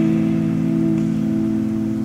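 A strummed guitar chord left ringing, its notes held and slowly fading.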